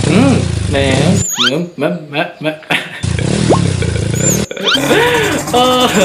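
A man's voice mumbling and humming ("mm, mam mam"), over a low steady rumble that drops out for a couple of seconds and then returns.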